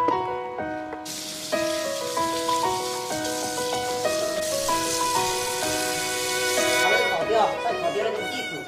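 Background music: a melody of held notes that change pitch in steps, with a steady hiss through most of the middle.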